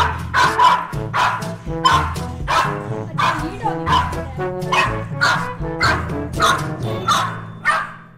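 German Spitz barking repeatedly, about two barks a second, over background music.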